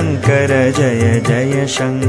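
Devotional Shiva keerthana music: a melodic chanted line bending in pitch over a steady low drone, with a sharp percussion stroke near the end.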